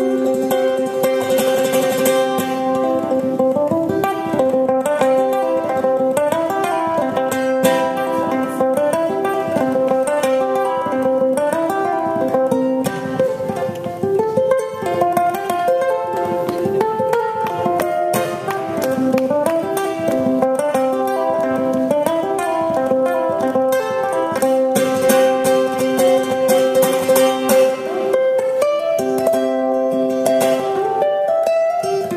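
Solo ukulele played live: fast banjo-style bluegrass picking, a rapid run of plucked notes over steadily repeated drone notes.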